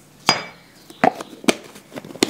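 A few sharp knocks and clinks of kitchen items handled on a countertop, the first with a brief ring. There is no mixer running.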